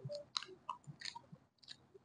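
Pani puri being chewed up close: a string of irregular crisp crunches and mouth clicks as the puri shell is bitten and chewed.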